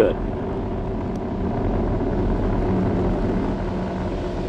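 Steady low rumble of an Atlas V rocket's RD-180 first-stage engine during ascent, just under half a minute after liftoff.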